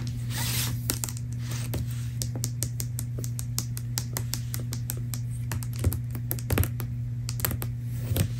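Fast, light tapping on a paper book, several sharp taps a second, with a brief soft brushing swish near the start and a couple of louder taps late on. A steady low hum sits underneath.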